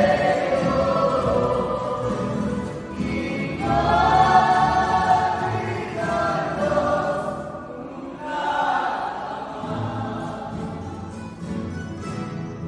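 A student estudiantina sings together in chorus, accompanied by strummed guitars and a double bass. The song comes in several sung lines with short breaks between them.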